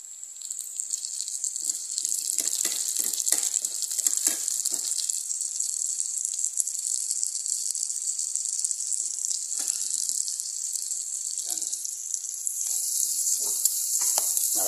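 Chopped onion, garlic and pork sizzling in hot oil in an electric skillet, a steady hiss with scattered crackles. The sizzle grows louder near the end.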